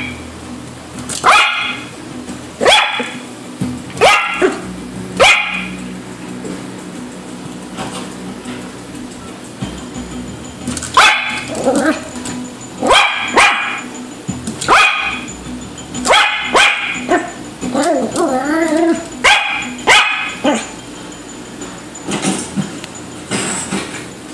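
Yorkshire terrier puppy barking at fish in an aquarium: short sharp barks about a second apart, a pause of several seconds partway through, then a quicker run of barks to the end.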